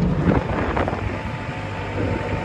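JCB telehandler's diesel engine running steadily, heard from inside the cab as the machine drives along carrying a bale.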